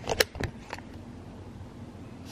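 Aluminium foil wrapper crinkling as it is handled open: a few sharp crackles in the first second, then only a faint steady hiss.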